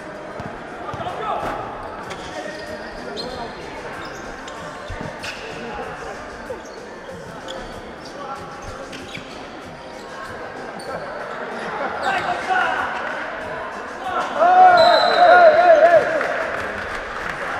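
Basketball game play: a ball bouncing on the court, short sneaker squeaks and players' voices. Near the end come loud shouts and cheering, the loudest part.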